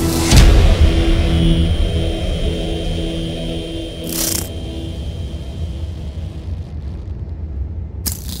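Cinematic trailer sound design: a low rumbling drone under sustained music tones, fading gradually. Brief noisy swooshes come just after the start and about four seconds in.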